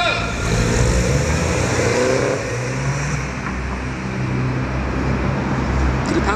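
Two MINI cars, a Roadster and a Coupé, pulling away together from a standing start. Their engines rev with a rising note over the first two seconds or so, then keep running as they draw away.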